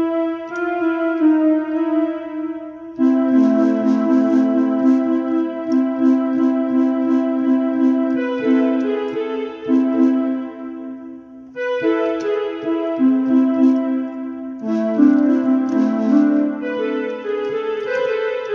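Portable electronic keyboard played with both hands: a slow melody over held chords. The playing dips briefly about two thirds of the way through, then carries on.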